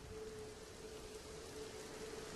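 Faint, steady rain ambience under a thin, steady low hum, the soundtrack's rain-and-thunder bed between stories.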